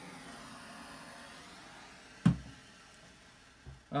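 Hand-held propane torch flame hissing steadily while it warms a steel bearing race, the hiss growing fainter near the end. A single sharp knock about two seconds in.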